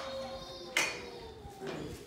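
Pages of a Bible being turned by hand: paper rustling, with one sharp page flick a little under a second in.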